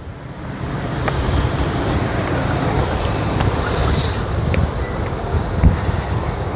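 Road traffic noise: a steady low rumble of passing vehicles that builds over the first second, with a few brief hisses around three to four seconds in.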